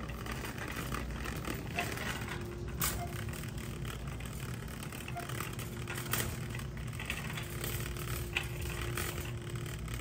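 Wire shopping cart being pushed along a store aisle: a steady low rumble of its wheels rolling on the hard floor, with scattered small clicks and rattles from the cart.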